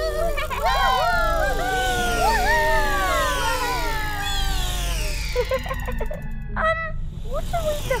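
Cartoon sci-fi sound effects: many overlapping warbling tones sliding downward in pitch, over a low steady hum, with a few shorter bleeps near the end.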